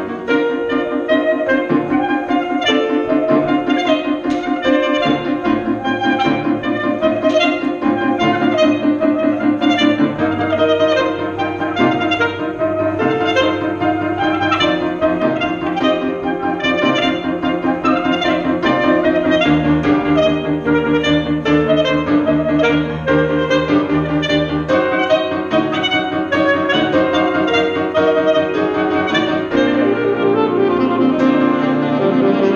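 Soprano saxophone and grand piano playing contemporary chamber music at a fast pace, with dense, rapidly repeated notes. Low piano notes come in about ten seconds in and again from about twenty seconds.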